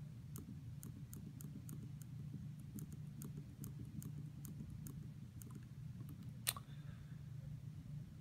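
Light clicks of SwissMicros DM42 calculator keys being pressed over and over, a few a second at an uneven pace, with one louder click about six and a half seconds in.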